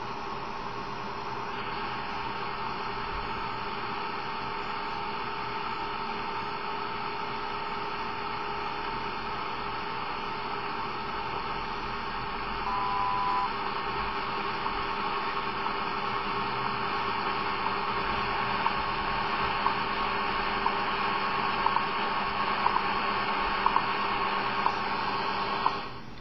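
Shortwave static and hiss from an Eton 550 receiver tuned to the WWV time signal on 25 MHz. A brief tone sounds about halfway through, and in the second half faint time ticks come through the noise about once a second.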